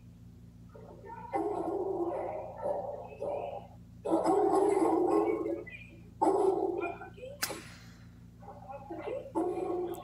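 A large adult male Cane Corso barking aggressively at a shelter staff member it dislikes as she approaches its kennel, played back through a computer speaker. The barking comes in several bouts of a second or more each, with one sharp knock about seven and a half seconds in.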